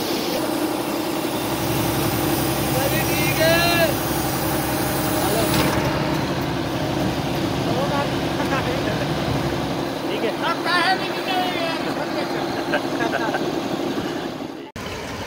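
Clayson 8080 combine harvester's engine running steadily, with men's voices over it at times.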